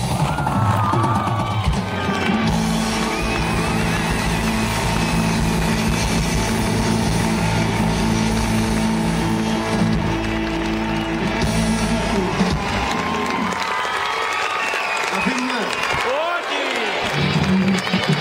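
Live rock band with electric guitars and drums ringing out a closing sustained chord. The band stops about twelve seconds in, and then the audience cheers and shouts.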